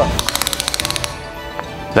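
Tape measure blade pulled out with a fast, even run of sharp clicks lasting just under a second, over steady background music.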